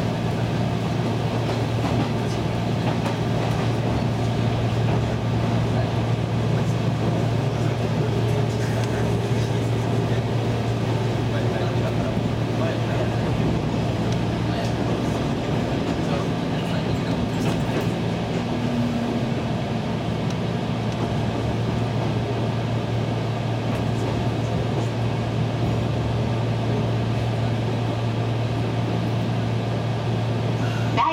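Electric passenger train running, heard inside the carriage: a steady low hum over the rolling rumble of the wheels on the rails.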